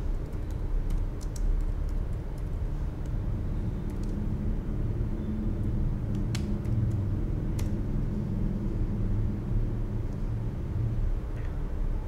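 Computer keyboard typing: a short run of light key clicks in the first two seconds, then two sharper clicks about six and seven and a half seconds in, all over a steady low rumble.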